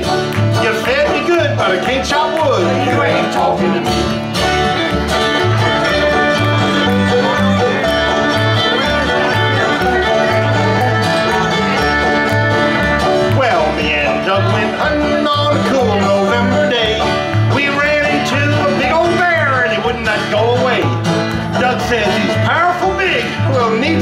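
Old-time string band playing an instrumental break between verses: bowed fiddle, banjo and acoustic guitar over a steady plucked upright bass line.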